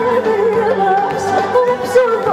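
Live Middle Eastern music: a woman sings a wavering, ornamented melodic line over amplified keyboard and band accompaniment.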